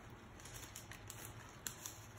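Faint rustling with a few light clicks as the wrapper of a sterile swab is opened and the swab is handled.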